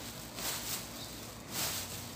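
Soft rustling and crinkling of thin plastic gloves and plastic film as hands press a chocolate sponge cake layer into its lined pan, swelling twice over a steady background hiss.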